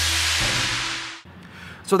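Loud static hiss with the last low note of electronic music under it, fading and cutting off about a second in. Then it goes much quieter until a man starts speaking at the very end.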